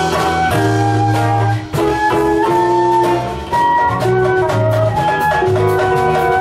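A small Brazilian-jazz band playing live: a flute carries held melody notes over piano, hollow-body and acoustic guitars, bass, drums and percussion.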